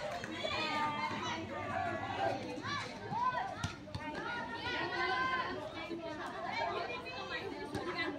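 Many high-pitched voices of teenage girls shouting and chattering over one another during a ball game.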